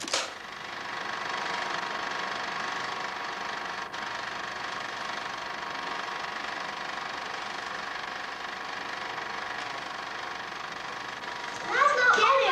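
A film editing machine running steadily with a mechanical whir, starting with a sharp click.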